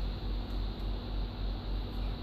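Steady low hum and hiss of background noise, with no distinct event.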